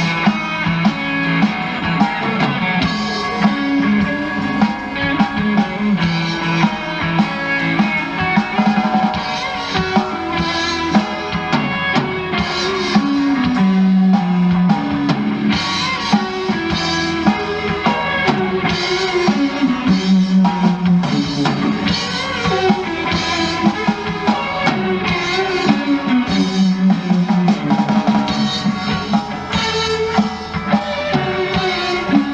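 Live rock band playing an instrumental passage: electric guitars over a steady drum-kit beat, with a stepping melodic line in the low register.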